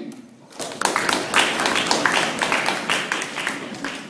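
Applause: a group of people clapping, starting about half a second in and dying away near the end.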